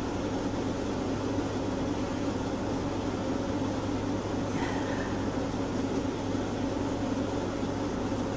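A steady low machine hum with a few fixed tones, unchanging throughout.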